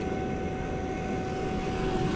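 A refrigeration vacuum pump running steadily while it evacuates a newly installed heat-pump line set: a constant mechanical hum with a steady whine.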